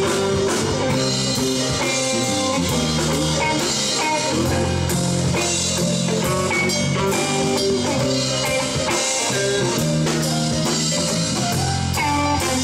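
Live rock band playing: electric guitar, bass guitar, drum kit and a Hammond XK keyboard, with a steady drum beat under held guitar and keyboard notes.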